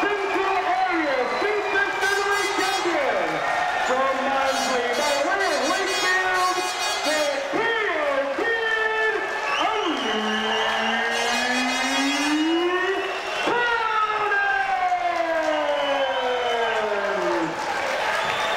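A ring announcer's voice through the arena PA, drawing the words out into long, sliding calls, the last one falling slowly near the end, with crowd noise behind.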